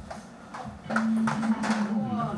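Ping pong ball being hit back and forth in a rally, a quick run of sharp hollow clicks of ball on paddle and table, coming faster in the second second. A steady low tone comes in about halfway through.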